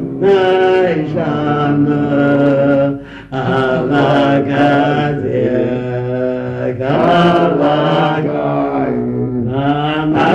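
A slow chanted melody sung in long held notes that glide from one pitch to the next, with a short break about three seconds in.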